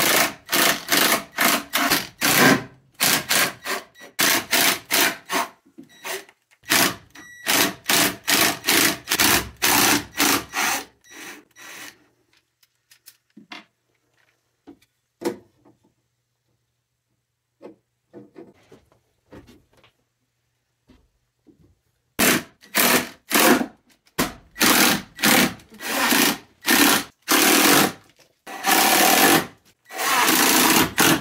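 Cordless drill driving screws, heard as a fast run of short chopped bursts, about three or four a second, with silent gaps between them. There are two spells of it, with a quieter stretch of a few light knocks in the middle.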